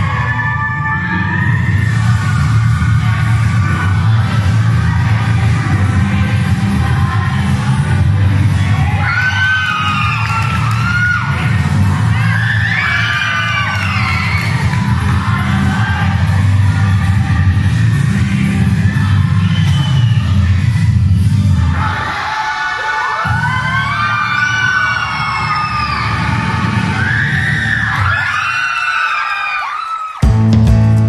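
Recorded music with a heavy low beat playing for a dance routine in a large hall, with high shouts and whoops from a crowd of children over it. The low beat drops out about two-thirds of the way through, and the crowd's shouts keep going over the quieter music.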